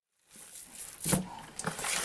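A hand squeezing and pressing wet paper clay in a plastic bowl: soft squelching and handling noise that starts abruptly, with a louder squelch about a second in.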